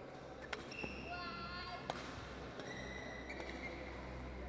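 Badminton rally in a large indoor hall: sharp racket strikes on the shuttlecock, about three of them, around half a second, just under one second and about two seconds in. Between them come short high squeaks of court shoes on the floor.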